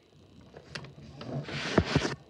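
A sheet of A3 paper being handled and folded on a table: sharp crackles, then a louder rustling swish of the sheet sliding and being laid over near the end, with a low thump.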